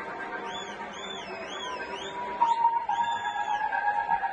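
Electronic dance music from a DJ set in a breakdown with no beat. A high synth line wavers up and down, then about two and a half seconds in the music gets suddenly louder with held synth tones.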